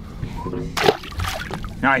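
A small amberjack tossed back overboard, landing with a single splash just before a second in that washes away over about half a second.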